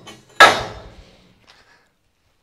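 A single sharp metallic clang that rings away over about a second: a flame-cut steel piece set down on the steel cutting table.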